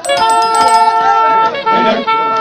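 A loud held musical note with a rich set of overtones, starting suddenly, breaking off briefly about one and a half seconds in and then resuming.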